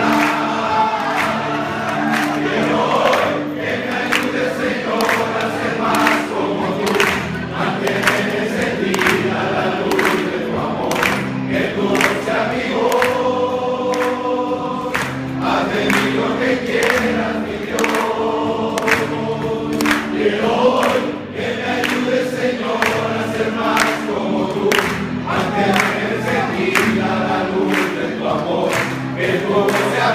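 A roomful of people singing a song together in unison, many voices loud and steady, over a regular beat of sharp strokes.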